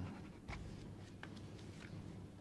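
Quiet room tone with a low hum and a few faint, short ticks or rustles, the kind made by handling papers or a pen near a microphone.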